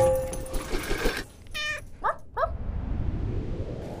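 Intro sting sound: a sharp musical hit that rings on. A second and a half in comes a dog's short yelp, then two quick rising yips.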